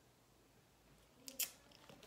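Quiet room tone, then a single short, crisp click about a second and a half in.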